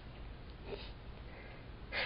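A faint breath from the narrator between sentences of the reading, over low steady room hiss.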